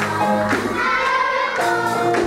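Live song performance: singing voices over band accompaniment, with held notes and a steady beat of about two strikes a second.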